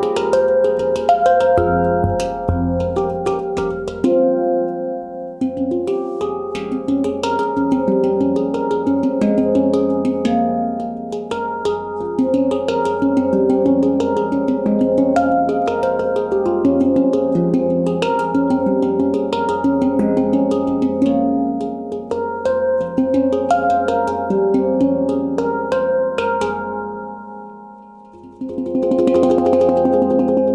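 Leaf Sound Sculptures mini handpan with an F2 centre note, played by hand: a continuous improvised run of struck, ringing melodic notes, with the deep centre note sounding in the first few seconds. The playing fades near the end, then comes back with a strong stroke just before the end.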